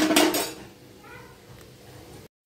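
A metal spoon clattering and scraping against an aluminium cooking pot, loudest in the first half-second, then quieter. A faint short call about a second in.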